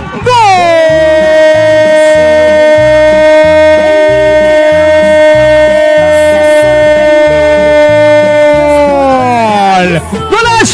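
A football commentator's long drawn-out goal cry, one held 'gooool' of about nine seconds that falls in pitch at the end. Background music with a steady beat runs underneath.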